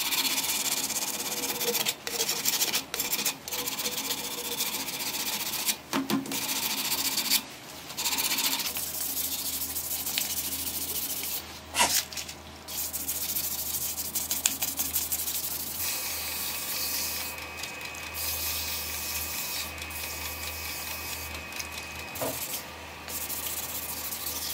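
Sandpaper, then a sanding sponge, held against an African blackwood and resin workpiece spinning on a wood lathe: a steady hissing rub, broken by short gaps where the abrasive is lifted off. The lathe's motor hums underneath, with a faint steady whine joining in past the middle.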